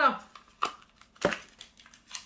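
A small plastic roller and its case being handled: a few brief rustling clicks, the loudest a little over a second in.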